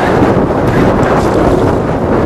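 Strong wind buffeting the camera microphone in an open boat at sea: a loud, steady rush of noise with a heavy low rumble.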